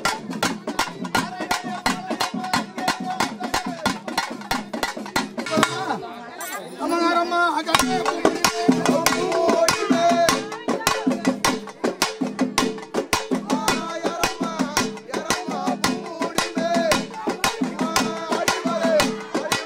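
Cylindrical double-headed drums beaten rapidly with sticks in a fast, unbroken festival rhythm. About seven seconds in, a voice chants or sings over the drumming.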